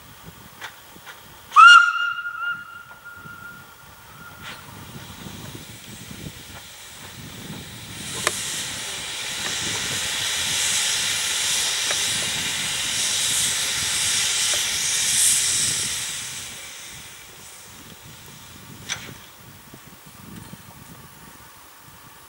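Narrow-gauge steam locomotive giving one short whistle toot about a second and a half in, the loudest sound. Later a long hiss of escaping steam swells up, holds for several seconds and dies away.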